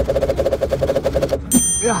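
A rapid rattling roll like a drumroll for about a second and a half, then a bright high chime that rings out suddenly as the egg carton is opened: reveal sound effects.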